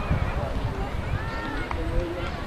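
Players' voices calling out on a rugby pitch as a scrum forms, with wind rumbling on the microphone.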